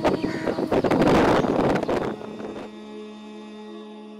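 Wind buffeting an outdoor microphone for the first two seconds. It then gives way to a steady, held vocal note, the start of a chant.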